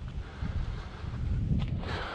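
Wind rumbling on the microphone, uneven and low, with a faint tap near the end.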